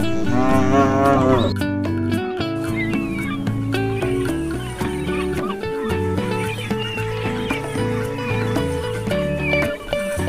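A cow mooing once, one long call of about a second and a half at the start, laid as a sound effect over a toy cow. Background music runs underneath throughout.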